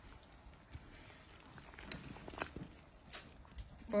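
A few faint, scattered clicks and taps from a metal spoon moving in a pot of bread pieces simmering in thick piloncillo syrup.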